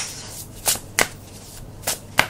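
A deck of tarot cards being shuffled by hand, the soft rustle of the cards broken by a few sharp slaps of card edges.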